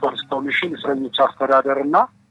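Speech only: a person talking steadily in Amharic.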